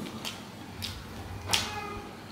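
Eating with the hands: fingers working rice on a plate, with sharp clicks from the mouth and plate. About one and a half seconds in comes a short, high-pitched cry.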